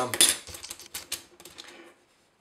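Several sharp light clicks and taps of a thin white plastic card strip being handled on a cutting mat, spread over the first second and a half.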